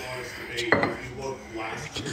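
Kitchen handling: a bottle set down on a granite countertop with one sharp knock under a second in, amid light clatter.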